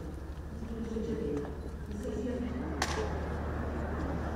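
Indistinct voices over a steady low hum, with one sharp click about three seconds in.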